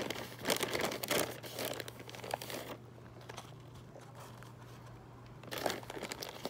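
Plastic bag of potting soil crinkling and rustling as soil is shaken out of it into fibre seedling pots, in irregular bursts over the first three seconds and again briefly near the end.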